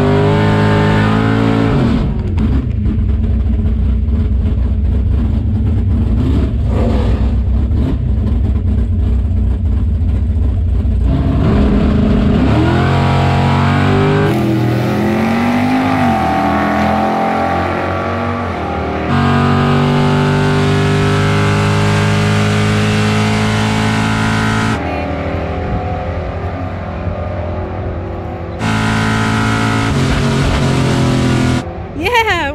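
Drag-racing Camaro's engine running loud in and around a quarter-mile pass, its pitch sweeping up and down as it revs and shifts. The sound jumps abruptly between in-car and trackside recordings several times.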